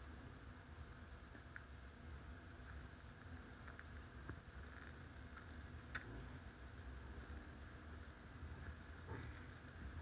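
Near silence: room tone with a low hum and a few faint, scattered small clicks as a lemon half is squeezed by hand over a small glass bowl.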